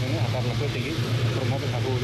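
A man speaking, over a steady low hum.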